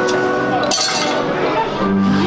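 Stage performance soundtrack: held music notes with a bright, chime-like clink a little under a second in.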